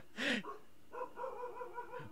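A man laughing: a short burst just after the start, then a high, wavering squeak of held-in laughter through the second half.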